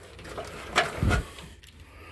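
Handling noise from a truck's wiring harness in corrugated plastic loom being grabbed and pulled up beside the battery: a few light clicks and rustles, with a dull knock about a second in.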